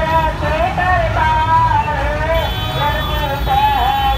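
Kirtan hymn singing, a held and gliding melody, over a dense low rumble of street traffic and crowd. A steady high-pitched tone joins about halfway through.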